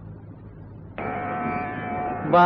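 A gap between two pieces of a Carnatic concert recording: faint background hiss, then about a second in a steady, evenly pitched drone with many overtones starts abruptly, opening the next piece.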